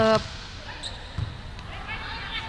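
Volleyball arena background with one dull thump of the ball about a second in, at the serve.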